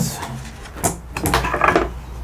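Plastic handling noise as a bucket with a Dust Deputy cyclone separator on top is lifted off a shop-vac cart, with a sharp click a little under a second in and fainter knocks and rustling after it.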